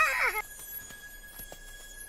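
Cartoon sound effect: a short, high, squeaky vocal cry at the start, then one steady high ringing tone held through, the magical chime as the teardrop's spell takes effect.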